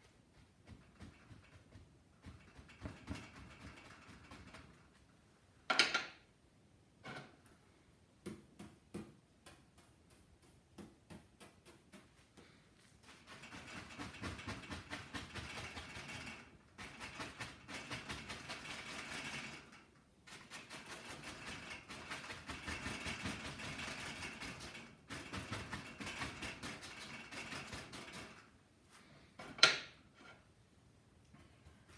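A paintbrush working oil paint on a stretched canvas. Scattered light taps and dabs give way to a long run of quick, continuous scrubbing strokes through most of the second half. Two sharp knocks cut in, one about six seconds in and a louder one near the end.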